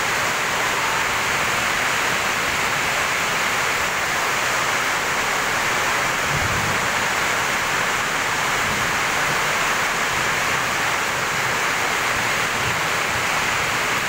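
Heavy rain pouring down steadily, a dense even hiss with no let-up.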